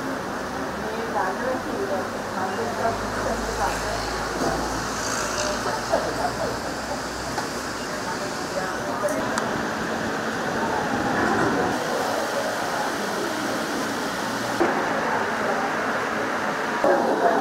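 Indistinct background chatter of several people over steady room noise in a busy hall.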